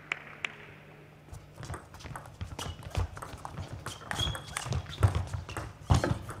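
Table tennis rally: the celluloid ball clicking off the rubber-faced bats and the table in a quick, uneven series, with a few heavier thumps from the players' footwork on the court floor.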